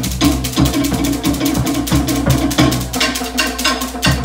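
Fast Polynesian drumming for a hip-shaking dance: rapid strikes on wooden log drums over a deeper drum, several beats a second, stopping abruptly at the very end.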